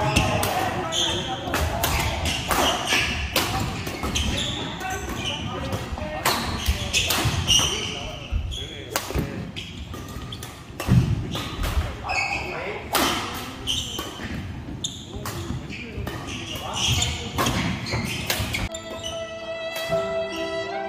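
Badminton rally in a large indoor hall: sharp hits of rackets on a shuttlecock come every second or so, with players' voices around them. Near the end, music with held tones comes in.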